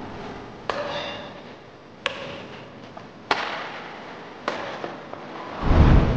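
Badminton shuttlecock struck by rackets in a rally: four sharp pops about every second and a quarter, each with a short echo of the hall. Near the end a loud, deep boom swells in.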